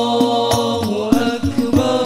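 A male voice singing sholawat in long held notes through a microphone and PA. Under it, Al Banjari rebana frame drums strike in a quick pattern, with deep bass thumps.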